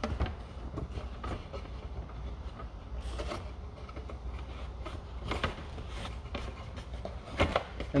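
Light, scattered clicks and knocks of hands handling a Baltic birch plywood basket while fitting a shock cord into it, over a low steady hum.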